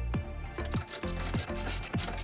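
Electronic background music with a steady beat of falling drum hits about twice a second.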